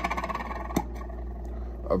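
A man's short, creaky mumbled vocal sound, made with his lip packed full of dip, then a single sharp click a little under a second in, over a steady low hum.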